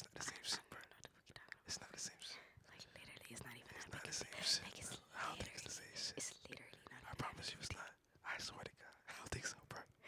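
Quiet whispered speech, faint and breathy, coming and going in short bits.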